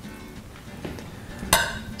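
Metal serving spoon clinking against dishware while casserole is served: a faint tap a little under a second in, then one sharp, ringing clink about a second and a half in.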